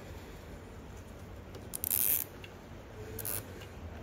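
Nylon zip tie being pulled through its locking head around a cable bundle. It gives a short zip about two seconds in and a weaker one just past three seconds.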